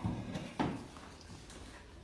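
Two soft knocks about half a second apart, with faint rustling: handling and movement close to the recording phone beside an upright piano before playing begins.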